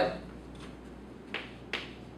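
Chalk tapping against a chalkboard: two short, sharp taps under half a second apart, past the middle, over quiet room tone.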